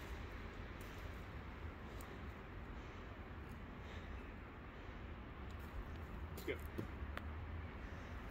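Steady outdoor background noise with a low rumble, and a few faint ticks and a brief short sound in the second half.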